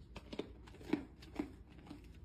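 Deer chewing a crunchy cookie treat, with several sharp crunches about half a second apart.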